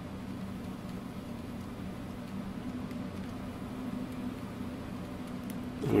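Steady low hum with a faint hiss: room tone with no distinct events.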